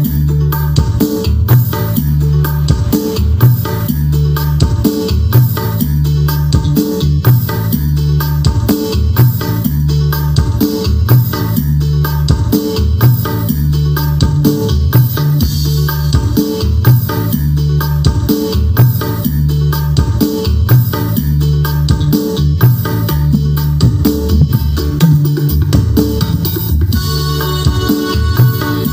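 Music played loud through custom-built speaker stacks (12-inch sub boxes with 6-inch mid towers) in a sound check, with a strong repeating bass line and a steady beat.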